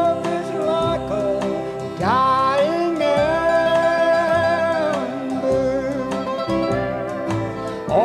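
A man singing a slow country ballad in long held notes that slide up into pitch, about two seconds in and again near the end, over guitar accompaniment.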